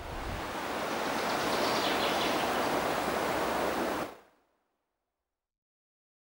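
Steady rush of flowing water, cut off abruptly about four seconds in.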